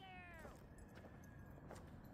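A single faint cat meow that falls in pitch and lasts about half a second.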